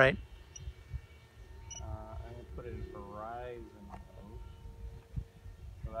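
Wind rumbling on the microphone, with quiet, indistinct voices about two seconds in and again a second later.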